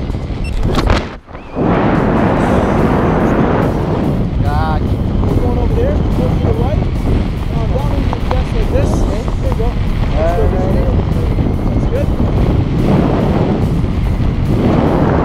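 Wind rushing over the camera microphone under an open parachute canopy, loud and steady, with a brief drop in level about a second in.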